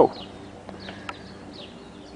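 Quiet outdoor background with a few faint, short bird chirps and a single faint click about a second in.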